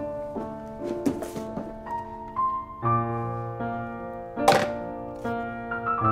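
Slow, soft piano music playing sustained notes and chords. A few short knocks and rustles come about a second in, with a louder one at about four and a half seconds, from a cardboard box and a paper note being handled.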